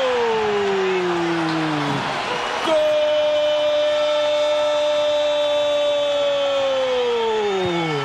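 Brazilian football commentator's long drawn-out goal shout ("Gooool") in two held breaths: the first slides down in pitch over about two seconds, the second is held steady for about five seconds and falls away near the end.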